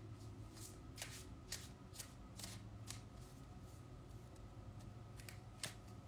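A deck of cards being shuffled by hand, faint and soft, with irregular light slaps of cards about every half second.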